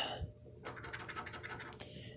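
A coin scratching the coating off a scratch-off lottery ticket, uncovering a letter. It is a rapid run of quick scratches that starts about half a second in.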